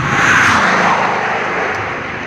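Bugatti Chiron's quad-turbo W16 going by at speed: a loud rush of engine and wind noise that peaks about half a second in, then eases slightly as a low tone in it drops in pitch.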